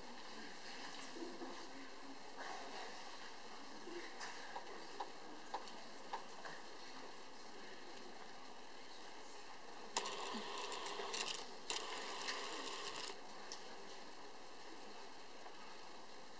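Faint background noise with a few scattered small clicks. About ten seconds in there is a louder stretch of rustle-like noise lasting some three seconds.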